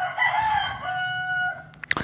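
A bird's single long, drawn-out call lasting about a second and a half, rising at first and then held on one pitch, followed by two short clicks near the end.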